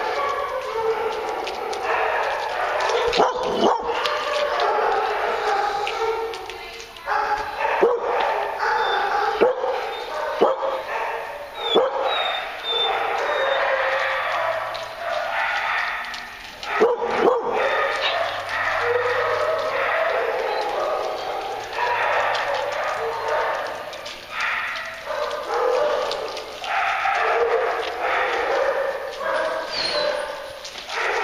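Several dogs barking almost without pause, with a few sharp knocks scattered through.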